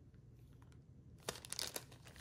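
Small clear plastic bags crinkling as they are handled. Quiet at first, then a run of crisp crackles from about a second in.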